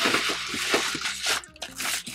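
Plastic bubble wrap crinkling and crackling as hands grip it and pull it back off the box contents. It dies down about a second and a half in, then gives a last short crinkle near the end.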